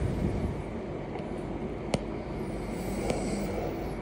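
Steady rushing outdoor noise of wind and gentle surf on a beach, with two faint clicks about two and three seconds in.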